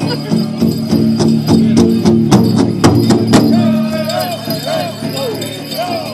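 Powwow drum group singing a fancy dance song over a steady drumbeat of about three strokes a second, with the dancer's bells jingling. The drum strokes are loudest a little past the middle and then soften under the singing.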